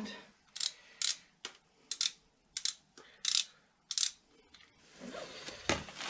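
Sharp metallic clicks, about two a second, from a hand wrench loosening the bolts on a tractor's rear PTO cover.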